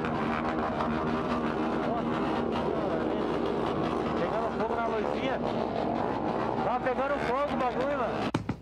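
Motorcycle engine running steadily at idle, with people's voices over it in the second half.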